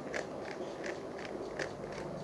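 Plastic Rubik's cube being twisted by hand, with a short click-clack at each turn of a layer, about five turns in two seconds.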